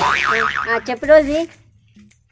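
A cartoon 'boing' sound effect with a pitch that wobbles rapidly up and down, over a noisy burst, in the first half-second. A short vocal sound follows about a second in.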